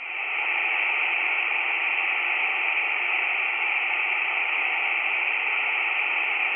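Tecsun PL-330 shortwave receiver in upper-sideband mode passing steady band noise, a even hiss with no station audible.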